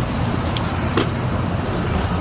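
Steady low outdoor background rumble, with two short clicks about half a second and a second in.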